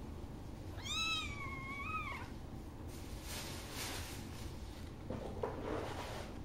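A newborn kitten mewing: one high-pitched cry about a second in, lasting over a second, rising, holding, then falling away. Soft rustling follows.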